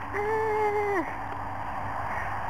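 A girl's drawn-out "ahh" cry, under a second long, held on one pitch and dropping as it ends, over a steady low hum.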